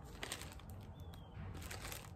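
Faint rustling of a plastic bag and light clicks as a small wooden ornament is handled, over a low steady hum.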